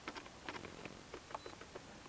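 A string of faint, irregular clicks from the keypad buttons of a Humminbird Helix 7 fish finder being pressed.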